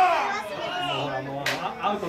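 Players' voices calling out and talking, a long drawn-out shout tailing off just as it begins, with a single sharp knock about one and a half seconds in.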